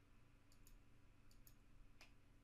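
A few faint computer mouse clicks, in two quick pairs, as surfaces are picked in the CAD program; otherwise near silence.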